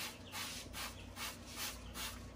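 Hand trigger spray bottle squirting water in quick repeated pumps, about three hisses a second, rinsing bleach off the inside of a window air conditioner.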